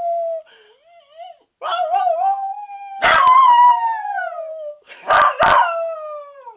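Small dog howling: a series of long howls that slide down in pitch, with a soft whine between them. The calls swell loudest about halfway through and break into two sharp yelping howls near the end.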